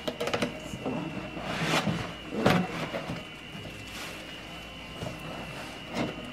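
Tissue paper rustling and a cardboard shipping box being handled, with sharp crinkles and knocks, the loudest about a second and a half and two and a half seconds in.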